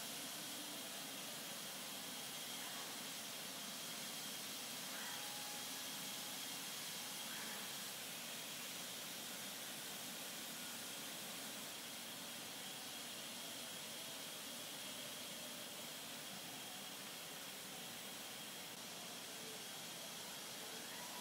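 Steady hiss of moving air in a car spray-paint booth, with a faint high whine held through it.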